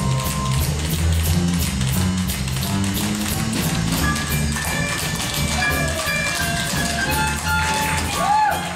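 Tap shoes striking a wooden stage floor in a quick, continuous run of steps by tap dancers, over musical accompaniment with a steady bass line; a higher melody comes in about halfway through.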